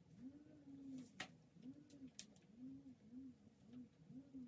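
A woman humming softly with closed lips: a string of short rising-and-falling notes like a repeated tune. A few light clicks come from her hands working in her hair.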